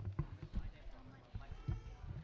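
A few irregular low thumps and knocks from people shuffling into place on a stage and handling sheets and stands, under voices talking.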